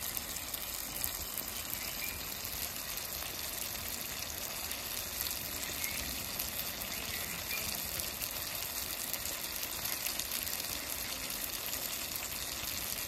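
Small fish, onion, tomato and chillies frying in oil in a black iron kadai: a steady sizzle with fine crackling.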